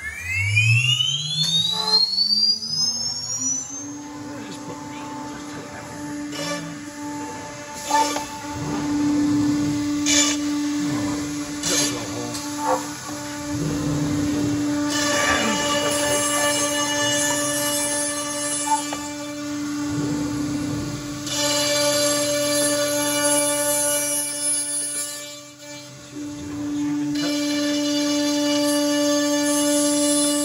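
CNC router spindle spinning up over the first few seconds to a steady high whine, then running while its specialist Lamello cutter machines the board, with louder cutting noise in several stretches.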